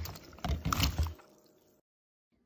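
Strawberries dropped by the handful into a plastic bowl of salt water: a quick run of splashes and plops in the first second, fading out by about a second and a half.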